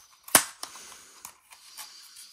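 A single sharp plastic snap, followed by a few fainter clicks and rattles, as the folding arms of a DJI Mini 4K drone are swung out and click into place.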